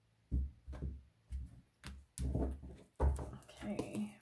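Oracle cards being handled and tapped down on a cloth-covered table: a series of soft, dull thumps, about two a second, growing busier near the end.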